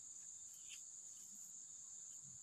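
Faint, steady high-pitched drone of insects chirring, with one soft tap about two-thirds of a second in.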